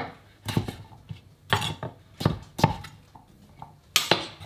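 Chef's knife chopping peeled butternut squash into cubes on a plastic cutting board: about six separate, unevenly spaced knocks of the blade striking the board.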